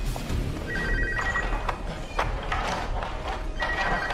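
Mobile phone ringing with an electronic ring, twice, about three seconds apart, over the film's tense music score.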